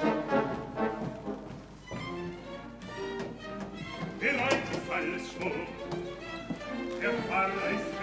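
Opera orchestra playing, with bowed strings prominent. Singing voices come in about halfway through.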